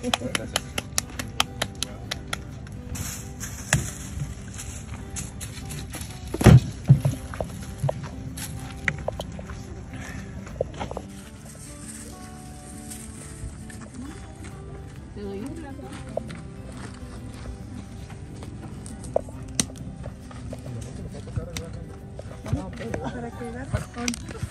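Background music over faint voices, with scattered light slapping taps of hands patting out tortillas, densest in the first few seconds. A louder low thump comes about six and a half seconds in.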